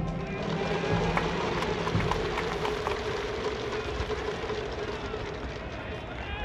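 Baseball stadium ambience: one long steady tone is held for about five seconds over crowd noise, with scattered sharp claps in the first half.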